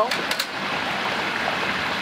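Hot oil bubbling and sizzling steadily around a whole turkey in a stockpot on a propane turkey fryer, the moisture in the bird boiling off in the oil while the burner is off. A few light clicks sound just after the start.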